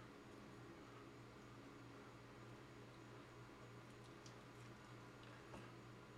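Near silence: a low steady hum of room tone, with a few faint clicks from a knife and fork cutting into a roasted chicken leg quarter on a plate, about four and five and a half seconds in.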